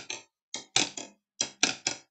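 Sharp percussive strikes beating out a syncopation rhythm (sixteenth, eighth, sixteenth), heard as two quick groups of three strokes.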